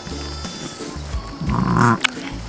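Background music with a repeating low beat, and a sheep bleating once, loudly, near the end.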